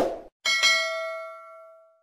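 A short click, then the ding of a subscribe-button notification-bell sound effect, struck once about half a second in. It rings out with a few clear tones and fades away over about a second and a half.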